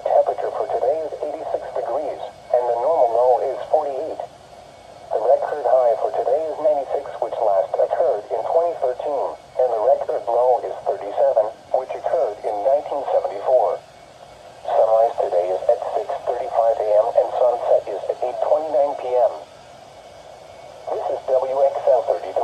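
Automated NOAA Weather Radio voice reading the forecast broadcast from a Midland weather alert radio's small speaker. It sounds thin and narrow, in phrases with short pauses between them.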